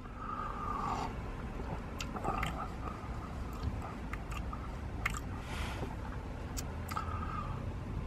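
A man sipping a hot drink from a paper cup and tasting it: faint sips and several small mouth clicks, over a low steady rumble.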